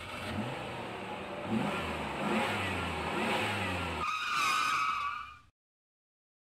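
Motor vehicle engine accelerating, its pitch rising in several steps as if working up through the gears. About four seconds in, a higher, steadier sound takes over for a second and a half, then everything cuts off abruptly.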